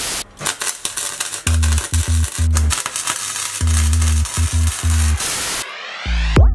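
Editing transition effect: loud TV-static hiss full of crackles over a heavy electronic bass beat. The static cuts off abruptly near the end.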